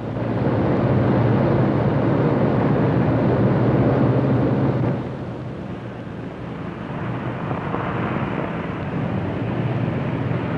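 Piston engines of a Lockheed Super Constellation airliner droning steadily on final approach with full flaps set. The drone is loud for the first half, drops off suddenly about halfway through, and then swells back up.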